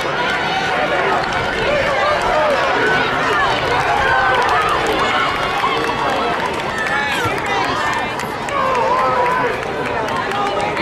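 Spectators yelling and cheering on runners, several voices overlapping over a steady crowd din.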